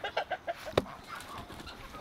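Chickens clucking in a quick run of short calls through the first second or so, with a sharp click a little under a second in, then quieter.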